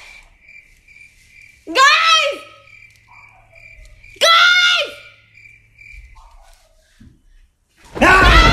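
A woman's voice calling out twice, each a short, loud, high call about two and a half seconds apart, like her "Guys?" calls just before.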